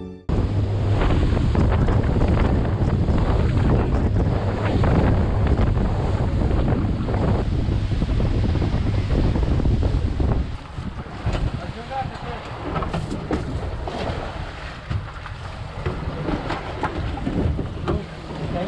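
Motorboat with twin outboard motors running fast over choppy open sea: a loud low rumble with heavy wind buffeting the microphone. After about ten seconds it drops quieter, leaving wind and water washing and splashing around the hull.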